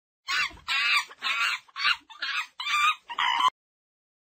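A run of about seven shrill animal cries in quick succession, a sound effect that cuts off abruptly about three and a half seconds in.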